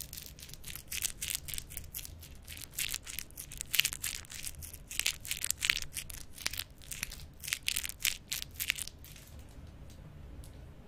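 Lollipop wrapper crinkling right at the microphone as a twist lollipop is unwrapped: a quick, irregular run of sharp crackles that dies away about nine seconds in.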